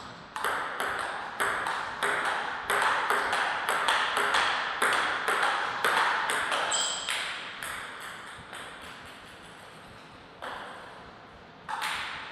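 Table tennis rally: a quick run of sharp clicks, around three a second, as the celluloid ball is struck by the rubber-faced bats and bounces on the table, lasting about seven seconds before it stops. A couple of single ball taps follow near the end.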